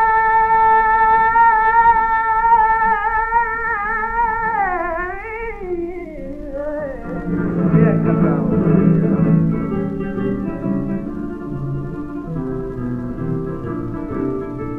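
Female flamenco singer on a 1930 Odeón 78 rpm record holding one long sung note that breaks into a wavering ornament about halfway through, after which the Spanish guitar takes over with plucked notes and chords. The old recording has no high treble.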